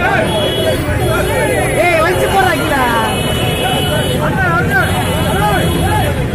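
Several men shouting and calling over one another, over a steady low street rumble.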